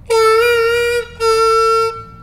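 C diatonic harmonica played with a lip-pursed embouchure on the hole-three draw: two held notes, the first about a second long and sliding up slightly just after it starts, then after a short break a second note of under a second.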